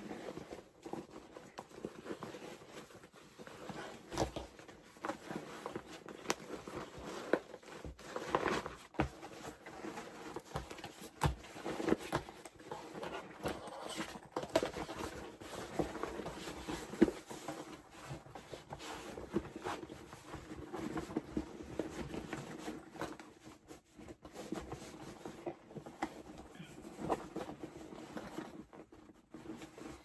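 Rustling and crinkling of a stiff canvas handbag being turned and worked by hand, with scattered light clicks and taps as it is handled.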